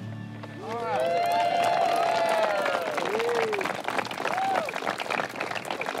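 A crowd applauding and cheering, with long whoops, starting about half a second in.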